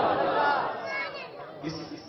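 A man's voice finishing a recited line, trailing off in the first second, then low chatter from the audience.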